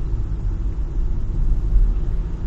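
Steady low rumble of a car on the move, engine and tyre noise heard from inside the cabin.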